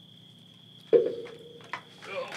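Crickets trilling steadily in the background, one unbroken high-pitched tone. About a second in, a man lets out a sudden, loud, drawn-out "oh" as he gets up from a wooden rocking chair.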